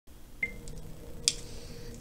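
A faint steady electrical hum with two small sounds over it: a brief high beep about half a second in, and a sharp click just past a second in.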